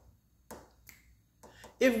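A few sharp finger snaps keeping time in a pause between sung lines of an a cappella song, then a man's singing voice comes in near the end.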